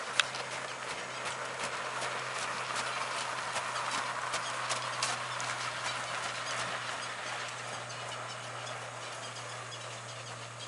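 Heavy draft horse's hoofbeats on sand arena footing with the rattle and crunch of the four-wheeled carriage it pulls, swelling as it passes close by about halfway through and fading toward the end. A single sharp click just after the start is the loudest sound, over a steady low hum.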